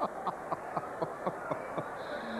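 A man laughing in quick, even bursts, about four a second.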